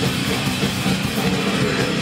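A crust punk band playing live at full volume: distorted electric guitars over a pounding drum kit, continuous with no breaks.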